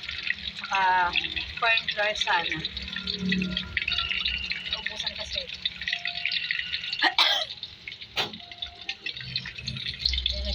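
Battered shrimp deep-frying in oil in a wok, a steady crackling sizzle, with two sharp knocks about seven and eight seconds in.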